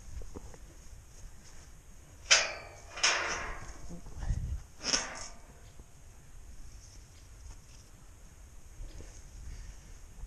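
A metal farm field gate clanking a few times, the loudest clank about two seconds in and two more within the next few seconds, with a dull thud among them.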